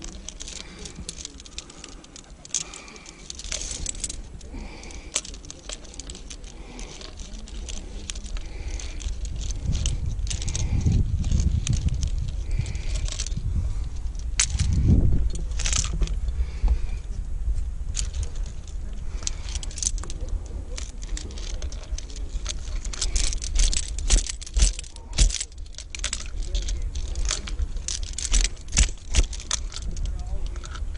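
Metal trad climbing gear (carabiners, cams and nuts on the harness rack and quickdraws) clinking and jingling as the climber moves up the crack, with a run of louder clinks near the end as a carabiner is handled and clipped. A low rumble swells and fades twice around the middle.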